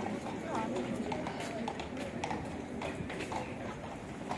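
Busy pedestrian street: passers-by talking, with irregular sharp clacks of steps on the stone paving, a few a second.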